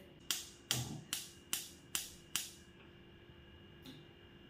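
Gas stove's spark igniter clicking six times, about two and a half clicks a second, stopping about two and a half seconds in.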